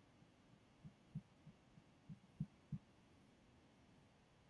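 Near silence broken by a string of soft, low thumps, about six of them spread irregularly over two seconds, a few stronger than the rest.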